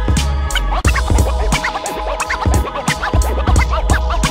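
Vinyl scratching on a turntable over a hip-hop drum beat: the record is pushed back and forth under the stylus while the mixer fader chops it, giving quick short rising and falling chirps from about half a second in.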